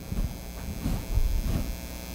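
Electrical mains hum on the microphone and sound system during a pause in speech, with soft, irregular low thumps.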